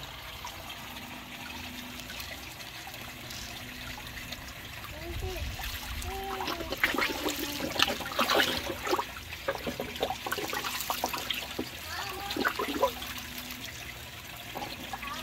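Water trickling steadily into a fish tank. From about six seconds in come a run of splashes and slurps as tilapia take floating feed pellets at the surface.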